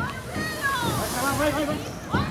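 Voices of people calling out at a distance over a steady high hiss.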